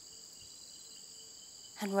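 Faint, steady, high-pitched cricket chorus from a forest-at-night ambience track. A woman's voice begins a word near the end.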